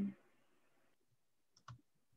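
The last of a spoken goodbye fades out, then near silence broken by one short, faint click a little over one and a half seconds in.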